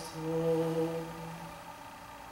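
Male a cappella vocal quartet holding a sustained sung note, which fades out about one and a half seconds in, leaving a quiet pause.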